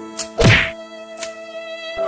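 A loud, heavy thunk about half a second in, with a falling pitch, after a small click. It is followed by background music of long held notes.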